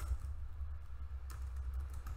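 A few faint keystrokes on a computer keyboard, the clearest about a second and a quarter in, over a steady low hum.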